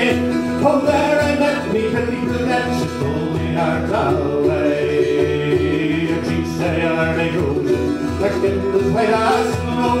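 Irish folk trio playing: mandolin and Irish bouzouki strumming chords over a steady bodhrán beat, in a passage between sung lines of a slow ballad.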